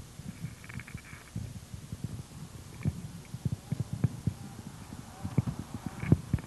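Irregular low thumps and rubbing from a handheld microphone being carried while walking.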